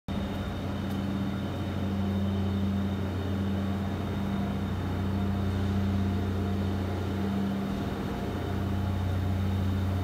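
Steady low electrical hum of machinery in a large wire-mesh and rebar workshop, with a faint high whine above it.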